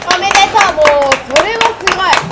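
Several people clapping their hands in quick, uneven claps, with women's voices cheering over the applause.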